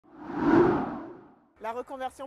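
A whoosh sound effect for a TV title-graphic transition, swelling to a peak about half a second in and fading away over the next second. A woman starts speaking near the end.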